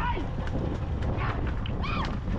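Men on a racing bullock cart shouting short cries to drive the bulls on, several calls about half a second apart with a louder one near the end, over a steady low rumble of wind and road noise.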